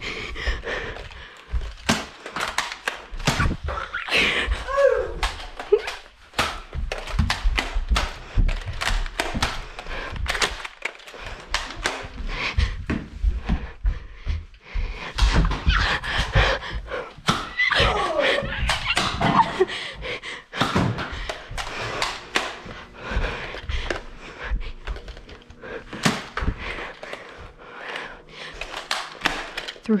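An irregular run of knocks and thuds: footsteps on a hardwood floor and the bumps of a handheld camera being carried at speed, with brief voices at times.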